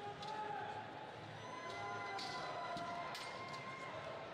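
Indoor arena ambience: a murmuring spectator crowd and distant voices echoing in a large gymnasium, with a few sharp knocks.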